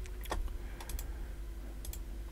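Computer mouse and keyboard clicks: about six short, sharp clicks scattered across two seconds, over a faint steady hum.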